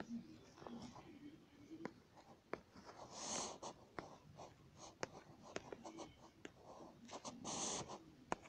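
Faint light taps on a tablet's glass screen while lettering is drawn, with two short breathy puffs from a person breathing close to the microphone, about three seconds in and near the end.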